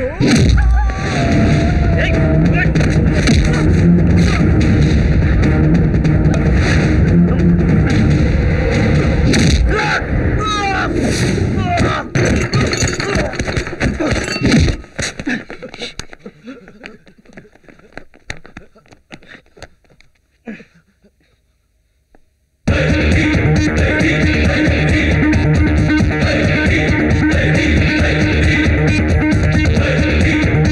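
Action-film fight soundtrack: loud background music mixed with shouts and sharp hit sound effects. About twelve seconds in the music drops away, leaving scattered hits that thin out to a second or so of near silence, then loud guitar-driven music cuts back in suddenly near the end.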